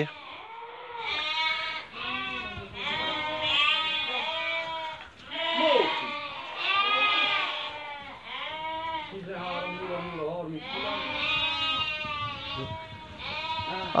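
A flock of sheep bleating, many calls overlapping almost without pause.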